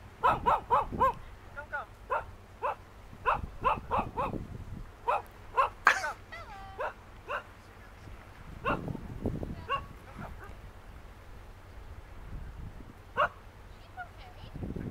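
An animal, dog-like, calling in a long series of short barks or yelps, thickest in the first half and then a few isolated ones, with occasional low rumbles underneath.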